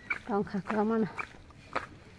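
A woman's voice speaking a short phrase in the first second, then a brief pause.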